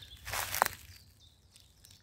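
A single footstep rustling through dry grass and leaf litter about half a second in, ending in a sharp click like a snapping twig, then quiet.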